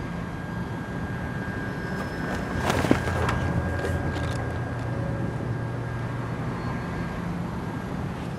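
Steady low rumble of outdoor background noise, like distant traffic, with one brief sharp knock about three seconds in.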